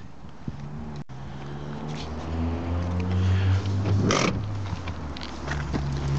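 Peugeot 207's 1.4 HDi four-cylinder diesel engine running at idle, its steady low note growing louder about two seconds in. A single short sharp click comes a little after four seconds.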